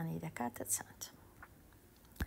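Speech: one spoken syllable trailing into a few soft, whispered sounds, then a short quiet pause.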